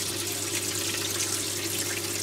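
Freshwater aquarium sump filter running just after restart: a steady rush and trickle of water as the pipes fill and the system primes itself, over a steady low hum. This gurgling of the filling plumbing is normal at start-up and dies away after a couple of minutes.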